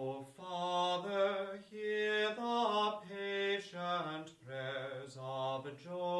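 Slow unaccompanied chant sung on a single melodic line: held notes moving stepwise, in phrases separated by short breaks.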